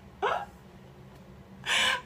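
A woman's short laugh about a quarter second in, followed near the end by a sharp, breathy intake of breath.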